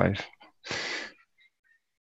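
A man's voice ending a word, then about 0.7 seconds in a short, even breath into the microphone lasting about half a second, followed by dead silence from the call's noise gate.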